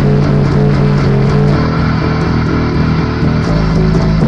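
Electric bass guitar played along to a live rock band recording, with the bass line moving through low notes over steady drums and band.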